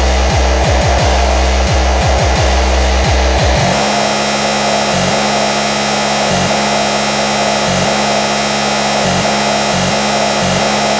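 Speedcore/extratone electronic music played loud. Fast distorted kick drums with falling pitch switch, about three and a half seconds in, to a continuous harsh buzz broken by short gaps about once a second.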